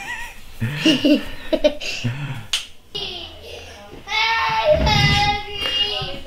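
People laughing, with a cough, then a small child's high-pitched laughing or squealing in the second half.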